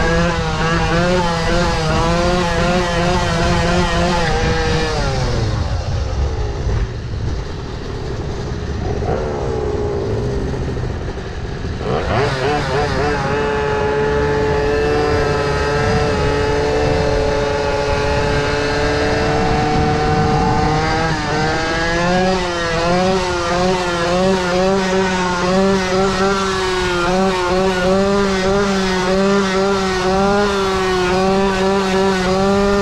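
Go-ped scooter's small two-stroke engine running under the rider, its revs wavering quickly with the throttle. The revs fall away about five seconds in, stay low until the throttle snaps open near the middle, hold steady for several seconds, then waver up and down again near the end.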